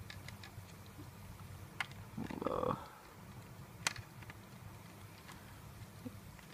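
Faint, sparse clicks and taps of hard plastic model-kit parts being handled and pressed together while a small plastic flag piece is worked onto the ship model. The sharpest click comes about four seconds in, and a brief murmured voice sounds a little after two seconds in.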